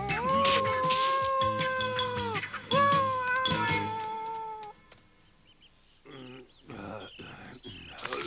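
A cartoon fox character's voice giving two long, drawn-out howls, the second trailing off slightly lower in pitch. Then near quiet, with a few faint soft sounds near the end.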